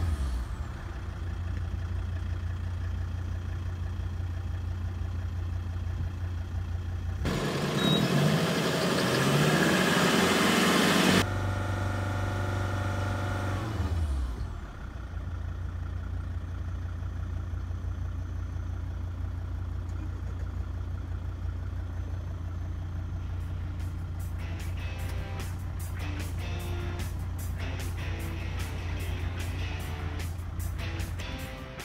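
A Volvo's engine drops back from a held rev near 3000 rpm to idle as the throttle is released in a stationary exhaust noise test, then idles with a steady low hum. A loud rushing noise lasts about four seconds partway through. Background music with strummed guitar comes in about three quarters of the way in.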